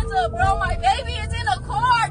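Raised voices inside a moving car over a low road and engine rumble, with a steady music bed underneath.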